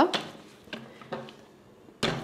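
Aluminium pressure-cooker lid being turned and locked onto the pot: a few faint metal clicks spread through a quiet stretch.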